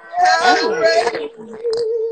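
A voice holding one long, wavering note, with other voices overlapping it in the first second.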